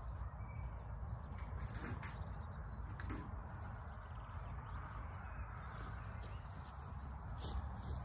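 Outdoor garden ambience: a steady low rumble with two short, high, falling bird chirps about four seconds apart.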